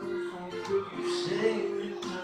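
Live music with guitar, several sustained notes changing in pitch.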